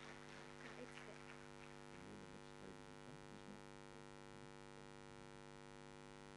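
Near silence with a steady electrical mains hum, a few faint indistinct sounds in the first few seconds.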